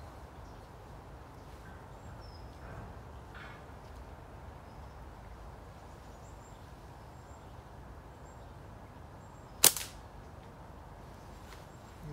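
Hunting catapult shot: after a slow, quiet draw, the flat bands and pouch are released with a single sharp snap about ten seconds in.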